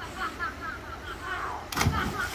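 A child jumping from a high diving platform into a swimming pool, heard as one sharp, heavy splash near the end.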